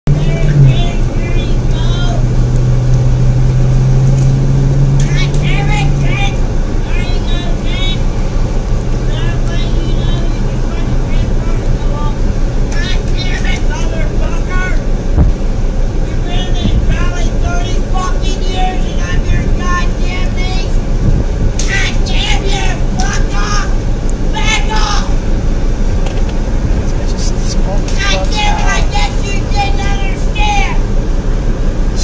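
A woman shouting and shrieking, high-pitched and wordless, heard from inside a car, with the car's engine humming steadily underneath, most clearly in the first few seconds.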